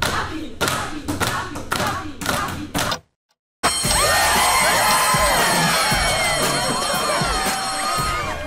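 A steady beat of sharp knocks, about three a second, stops suddenly about three seconds in. After a short silence an electric school bell rings steadily under a class of young people cheering and shouting.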